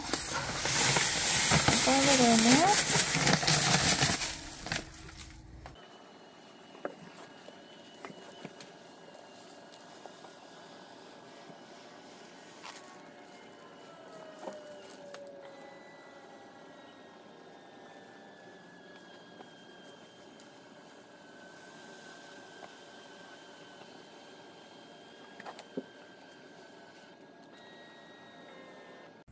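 Loud plastic rustling for about four seconds, then a long quiet stretch with a faint steady hum and a few light clicks.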